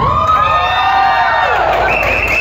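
Party guests cheering and whooping, with gliding calls, as the dance music drops out; a long, steady whistle begins near the end.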